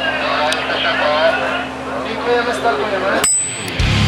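Old CRT television sound effect: a steady hum under warbling, garbled voice-like tones, the sound of a set losing its picture to interference. About three seconds in, a sharp click and a brief high tone.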